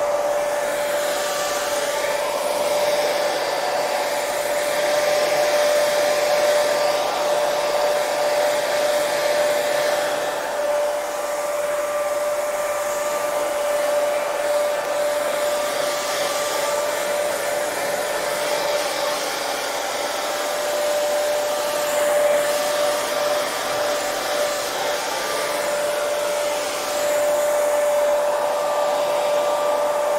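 Hair dryer running continuously: a steady rush of air with a constant whine, the hiss swelling and easing every few seconds.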